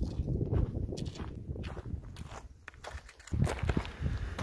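Footsteps on a dry dirt and gravel hiking trail: a run of irregular short scuffs and crunches as someone walks along it.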